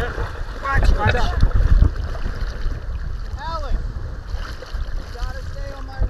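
Wind buffeting the microphone over choppy water splashing at a kayak's bow, gustiest about a second in. A few short, distant, rising-and-falling calls are heard: a cluster about a second in, one midway and more near the end.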